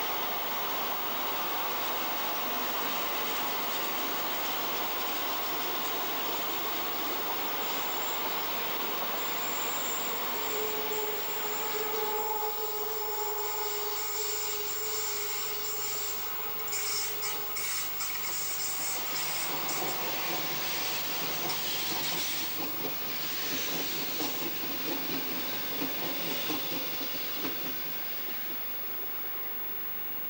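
Trains running past on the track: a steady rumble of wheels on rail, with a thin high wheel squeal from about a third of the way in and a few clicks from the wheels over rail joints. The noise dies away near the end as the train moves off.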